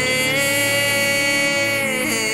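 A woman singing one long held note in a slow ballad, with instrumental accompaniment beneath; the note ends just before the close.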